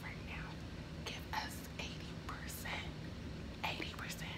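A woman whispering a few short, breathy words, soft against her normal talking voice, over a faint steady low hum.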